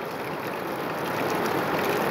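Heavy rain pouring down on a plastic sheet roof and muddy ground: a steady hiss that grows slightly louder.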